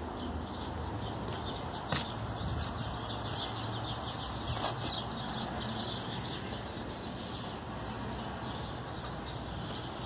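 Steady outdoor background noise with faint bird chirps scattered through it, and a sharp click about two seconds in and another a little before five seconds.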